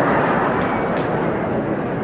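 Theatre audience applauding and laughing after a comic punchline, a dense steady clatter that slowly tapers off.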